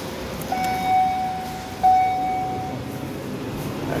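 Hydraulic elevator's electronic chime sounding twice at the same steady pitch, each tone lasting about a second, the second one louder, over a steady background hum.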